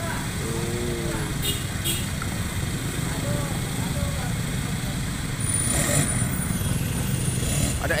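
Street traffic: a steady low engine rumble of motorcycles, swelling louder about five seconds in, with faint voices in the background.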